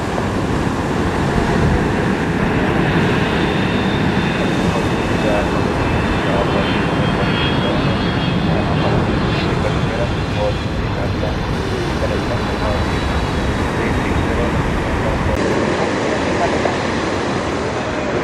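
Boeing 777 airliner's twin jet engines running steadily as it flies low on final approach and lands, with a faint high whine of the engine fans through the middle. A little after three-quarters of the way through, the sound cuts to a quieter background.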